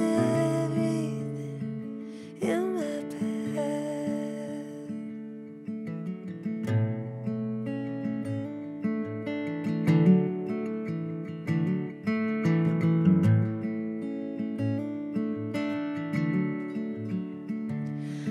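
Acoustic guitar picked in a slow, sparse instrumental passage between verses, with a brief wordless sung note about two seconds in.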